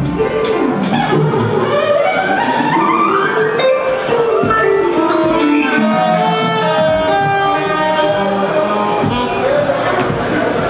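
Live reggae band music: the drums and bass drop out at the start, leaving sustained melodic lines that climb in pitch for a few seconds, then fall again.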